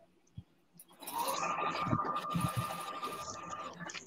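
Singer electric sewing machine running for about three seconds, starting about a second in and stopping near the end, with a steady motor tone as it stitches a seam.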